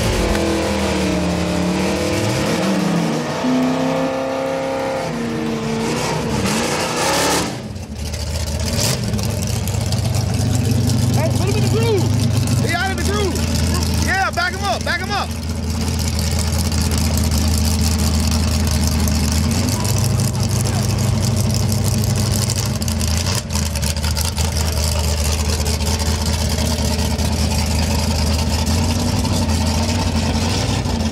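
Engines of an Oldsmobile Cutlass and a Chevrolet G-body drag car running at the starting line before a race. The pitch rises and falls over the first several seconds, then settles into a steady low idle.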